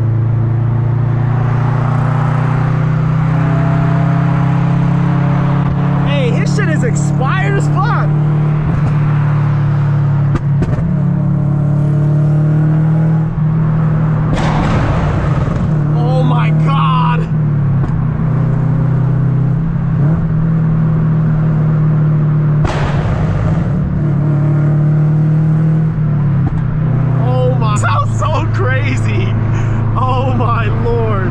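2013 Scion FR-S flat-four engine and exhaust droning steadily at highway cruise, heard from inside the cabin. The drone's pitch steps down near the end.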